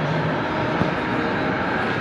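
Steady hum and hiss of a large indoor hall, ventilation noise with faint background murmur, even throughout with no distinct events.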